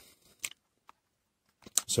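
A few short, faint plastic clicks as the jump starter's rubber port flap and sliding covers are handled, the clearest about half a second in.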